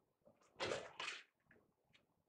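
Sheet of watercolour paper sliding and rustling on matboard as it is pushed into place: two brief scrapes, about half a second and a second in.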